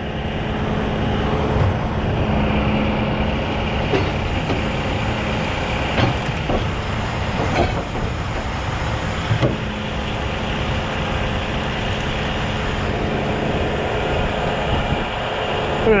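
Heavy wrecker's diesel engine running steadily to power the hydraulics while the boom and winch control levers are worked, with a few short sharp knocks scattered through.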